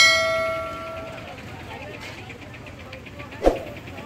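A notification-bell chime from a subscribe-button animation: one bright bell ding that rings on and fades over about a second. A short thud follows about three and a half seconds in, over the murmur of a street crowd.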